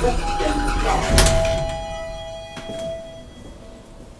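Elevator arrival chime: a two-tone ding-dong, the second tone lower and ringing on for about two seconds. There is a loud clunk about a second in, from the elevator or its doors.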